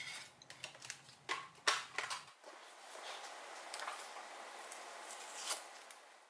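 Faint scattered clicks, taps and rustles of small craft supplies being handled, a plastic die package and cardstock with painter's tape, followed by a faint steady hiss.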